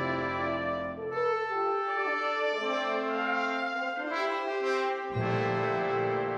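Wind ensemble brass playing sustained fanfare chords. About two seconds in, the low brass drops out, leaving the higher brass holding the chord. Just after five seconds a full chord comes back in with the low brass.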